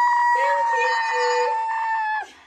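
A young child's long, high-pitched wail held on one steady pitch for about three seconds, with a second, lower voice joining briefly in the middle.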